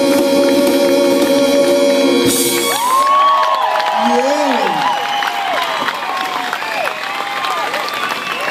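A big band holds the final chord of a song, ending with a cymbal crash about two and a half seconds in; the audience then cheers, whoops and applauds.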